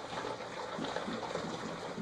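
A litter of Scottish terrier puppies lapping and slurping food from one shared dish, a steady wet smacking mixed from several mouths.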